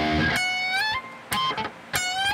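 Electric guitar tuned down to E-flat playing a short lead phrase. It opens on a low note, then high single notes are bent upward in steps, with a fresh pick attack near the end.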